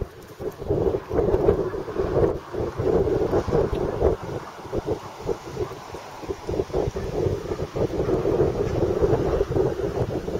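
Wind buffeting the camera microphone, a rumbling noise that rises and falls in gusts.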